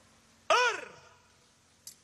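A single loud shouted military drill command, one drawn-out syllable about half a second in whose pitch rises and then falls before it trails off. A short click near the end.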